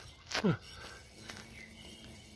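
A short spoken "ah", then a faint steady low hum with a light tick.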